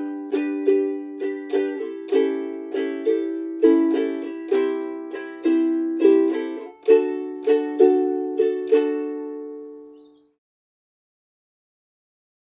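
Ukulele strummed in a calypso or island strum (down, down, up, up, down, up each bar) through four bars of G, A7, C and D. The last chord rings out and dies away about ten seconds in.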